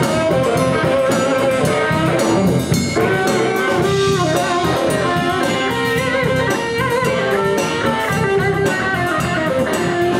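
Live blues band playing an instrumental funk groove: electric guitar, electric bass and drum kit, with baritone saxophone.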